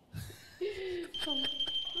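A steady, high-pitched electronic beep tone comes on about a second in and holds without a break, over a woman's startled, raised voice.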